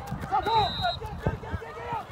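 Players and spectators shouting across an open playing field, the loudest calls about half a second in, with a short high steady tone under them.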